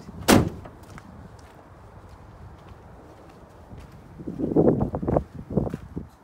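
The sliding side door of a Citroen Dispatch van being opened: a sharp clunk as the handle releases the latch, then, near the end, a louder stretch of rumbling and a few knocks as the door runs back along its track and catches open.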